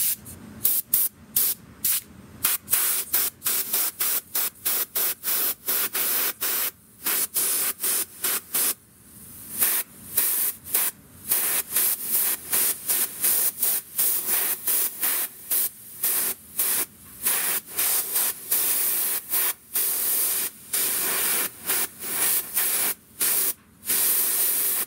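Airbrush spraying a graphite and India ink conductive fluid in short on-off bursts of hiss, about two a second, with a brief pause just under a third of the way in.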